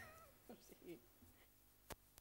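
Near silence, opening with a brief, high, wavering bit of a person's voice, then faint fragments of voice and a single sharp click near the end.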